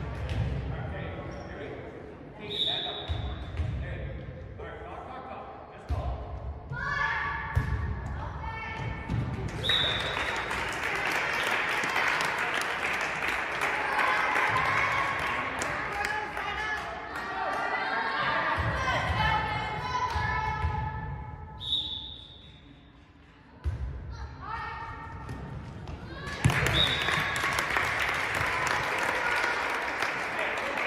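Volleyball match sounds in a large, echoing gym. There are four short referee whistle blasts, with players and spectators shouting and cheering between them, and thuds of the ball.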